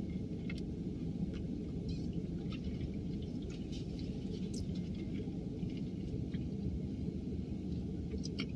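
Quiet, steady low hum of a parked car's cabin, with a few faint, scattered small clicks.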